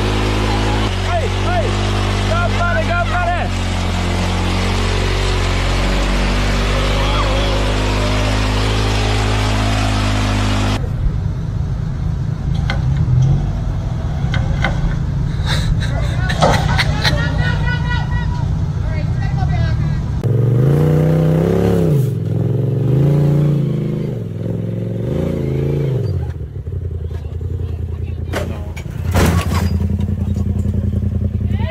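Off-road vehicle engine sounds mixed with voices: a steady drone that cuts off about a third of the way in, then an engine revved up and down in three quick swells about two-thirds through.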